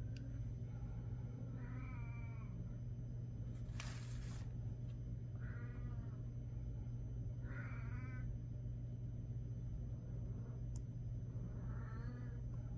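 Four short pitched calls like an animal's cries, each under a second, over a steady low hum, with a brief burst of noise about four seconds in.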